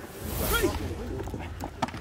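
Low rumble of wind on the microphone, with faint distant voices and a few light clicks near the end.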